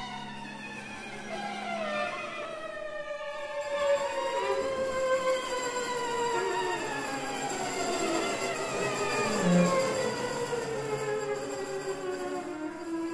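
String quartet playing slow, overlapping downward glissandi with a wavering vibrato, the pitches sliding lower through the whole passage. A short low note sounds just before the ten-second mark.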